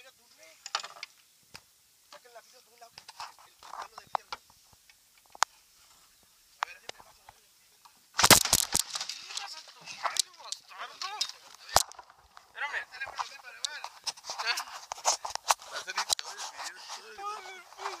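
A sudden loud splash about eight seconds in, then continued splashing as an arrow-struck alligator gar thrashes at the water's surface.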